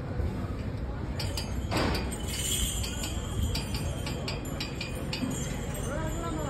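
A run of irregular sharp metallic clinks, a dozen or so from about a second in, over a steady low outdoor din.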